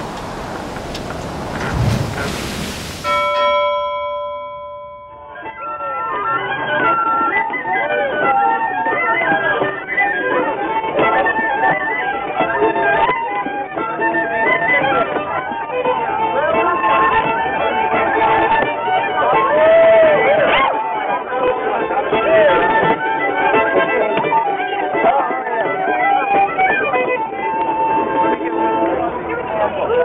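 A fiddle tune played live, with the melody's notes sliding and wavering, and people's voices mixed in. It opens with about three seconds of rushing hiss and a few held notes before the tune gets going.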